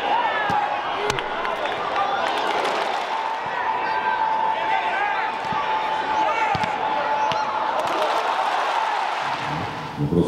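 Live football match sound: stadium crowd shouting and chanting, with a long held note through the middle, players calling out on the pitch, and a few sharp thuds of the ball being kicked.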